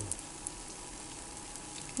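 Yeast-dough pirozhki frying in shallow sunflower oil in a pan: a steady sizzle with a few faint crackles.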